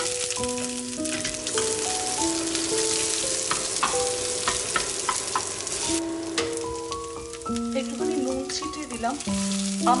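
Sliced onion and whole spices sizzling in hot oil in a stainless steel pan, with scattered crackles and occasional taps of a wooden spatula. The sizzle drops suddenly about six seconds in. Soft background music of held notes plays over it.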